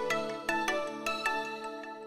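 Short intro jingle of bright, chiming struck notes played in quick succession, each ringing on and the whole fading away near the end.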